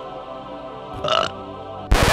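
Soft background music with a short comic burp sound effect about a second in. A loud burst of noise starts just before the end.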